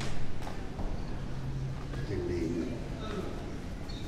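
Outdoor ambience of people's voices in a stone passage, with footsteps on stone and a louder moment right at the start.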